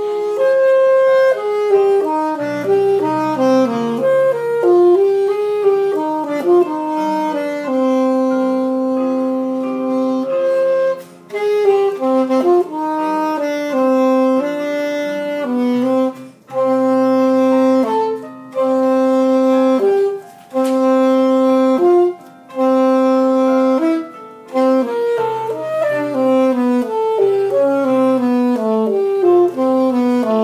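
A saxophone playing a melody, with several long held notes and brief pauses between phrases.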